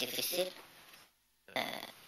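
Speech: a voice speaking in short phrases, broken by a brief near-silent gap just after a second in.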